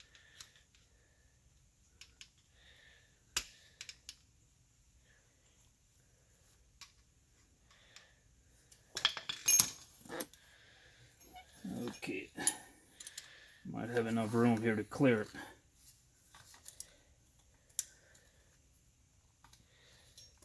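Scattered light metallic clicks and clinks from ratchet strap buckles and shock absorber parts being handled, with a denser run of clicks about nine seconds in. Two short muttered vocal sounds come about twelve and fourteen seconds in.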